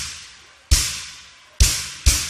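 Swingueira dance music at a break: three heavy drum hits about a second apart, each ringing out and fading before the next.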